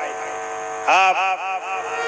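Devotional music: a steady held tone, then about a second in a man's voice sings a wavering, melodic line.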